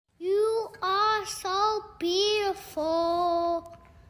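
A young child singing a slow melody in several short held notes, the last one held longer, then stopping shortly before the end.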